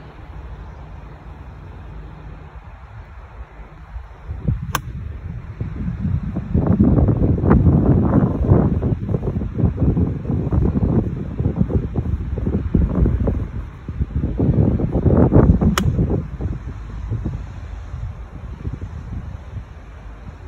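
Two crisp clicks of a golf iron striking the ball, one about five seconds in and the other about eleven seconds later. Heavy wind buffeting on the microphone, louder than the strikes, fills most of the time between and after them.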